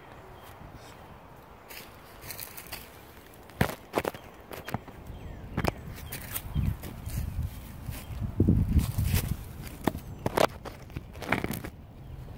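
Crunching footsteps on rail ballast and dry leaves, with knocks and scrapes from a phone being handled and set down on the ground: a string of irregular sharp clicks and crunches, loudest about eight to nine seconds in.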